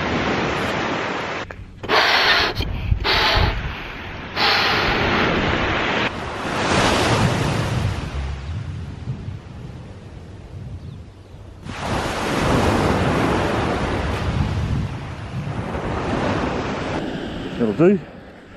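Surf washing up a sandy beach, the wash swelling and fading in long surges of a few seconds each. Wind buffets the microphone in hard gusts during the first few seconds.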